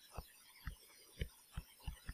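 Faint, short taps and strokes of a stylus writing on a tablet, about five soft low knocks in two seconds.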